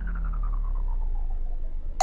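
Synthesized logo-animation sound effect: a deep low rumble under a pulsing tone that glides steadily down in pitch.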